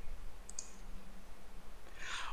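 Two quick, faint computer mouse clicks about half a second in, over a faint steady background hum.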